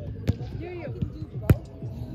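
A volleyball being struck twice during a rally, two sharp smacks about a second apart, the second louder, over the murmur of voices nearby.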